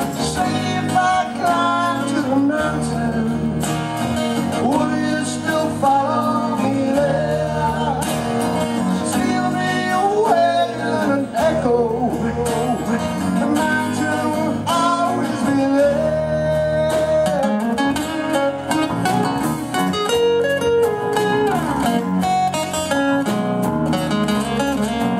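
Live band performance of an acoustic rock ballad: a strummed acoustic guitar and an electric bass guitar under a male vocal line.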